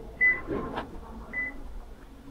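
Two short, high-pitched electronic beeps about a second apart, with a brief knock between them.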